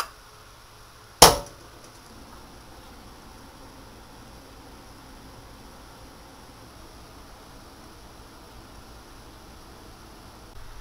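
A drinking glass set down on a sink, one sharp clink with a brief ring a little over a second in.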